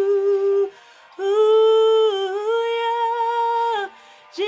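A woman's voice holding long wordless, hummed notes with no accompaniment: a short note, a break about a second in, then a long note that steps down a little in pitch halfway through.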